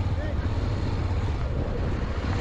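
Wind buffeting the microphone of a motorcycle-mounted camera, a steady low rumble with an even hiss over it.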